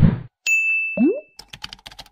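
Animated end-screen sound effects: a swelling whoosh that peaks and stops just after the start, then a bright held ding lasting about a second with a quick rising swoop under it, then a fast run of sharp clicks near the end.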